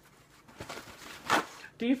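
Paper towels rustling and being torn off, in a rustle that builds to one short, loud tearing burst about a second and a half in.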